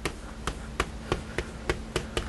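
Writing on a lecture board: a run of short, sharp taps, about three a second, as the writing implement strikes the board.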